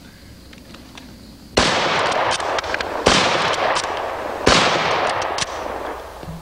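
A rifle fired three times, about a second and a half apart, each shot followed by a long echoing decay.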